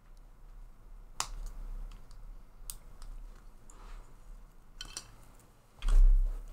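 Small 3D-printed ABS plastic parts handled and pressed together by hand, with a few sharp scattered clicks. A dull thump comes just before the end and is the loudest sound.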